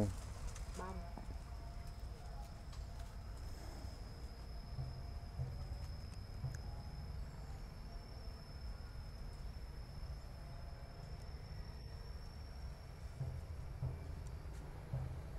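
Quiet outdoor ambience: a low steady rumble, faint voices in the distance, and a thin, steady high-pitched whine.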